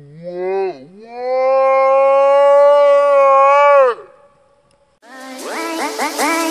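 A woman's voice gives a short rising call, then holds one long loud note for about three seconds before it drops away. About a second before the end, electronic music starts with repeated rising zips.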